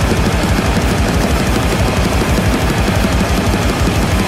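Loud, heavily distorted grindcore played by a full band, a dense wall of guitar noise over fast, even drum pulses.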